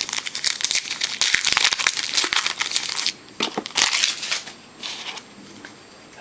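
Foil wrapper of a 2012 Topps Finest football card pack being torn open and crinkled by hand. The crinkling runs for about three seconds, with a shorter burst about four seconds in.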